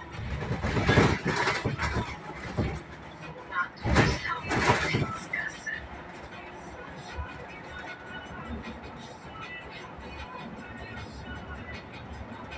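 Cabin noise of a moving city bus: steady engine and road noise. It is interrupted in the first five seconds by two louder stretches of indistinct noise.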